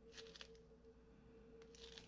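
Near silence: room tone with a faint steady hum and a few faint soft ticks, a pair early on and another near the end.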